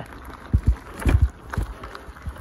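Mountain bike rolling fast over a bumpy dirt trail: a steady rough rumble of tyres on soil, with several dull thuds and rattles as the bike jolts over bumps, clustered a half-second and a second in and again near the middle.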